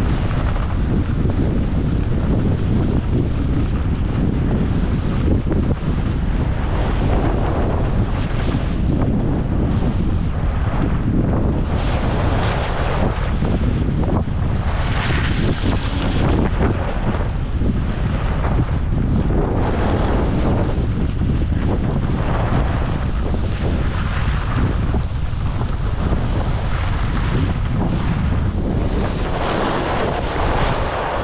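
Heavy wind buffeting the microphone as a skier runs down a groomed slope, with the hiss of skis scraping the snow swelling and fading every few seconds as the turns come.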